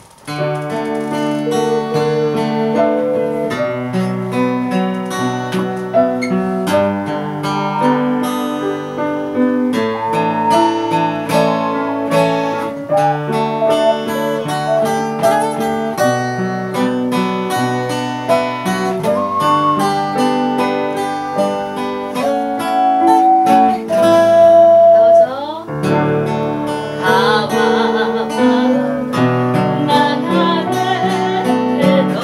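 Small-ensemble music that starts suddenly: an ocarina plays along with a plucked-string accompaniment. A singing voice with vibrato joins near the end.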